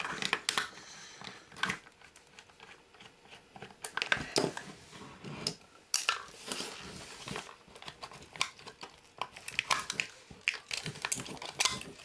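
Screwdriver prying the plastic bottom shell off a JVC GX-N7S video camera: irregular clicks, snaps and creaks as the plastic clips let go, with handling clatter of the housing. A busier run of snaps comes near the end as the shell comes free.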